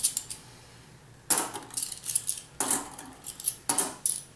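Half-dollar coins clinking against each other as they are handled and sorted in the hand: quiet at first, then a quick run of sharp metallic clinks from about a second in.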